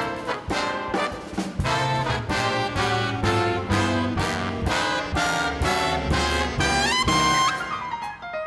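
Jazz big band playing live, with the brass section hitting punchy rhythmic figures over bass and drums. Near the end it rises in a glide to a held high note.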